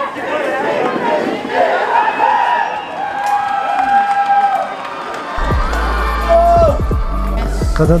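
A team of football players shouting and cheering together as their huddle breaks. Music with a heavy bass comes in about five seconds in.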